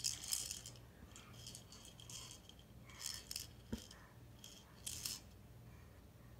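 Faint, intermittent rattling and clicking of a small plastic ring toy handled and shaken by a baby, in short bursts about once a second, with one sharper knock a little over halfway through.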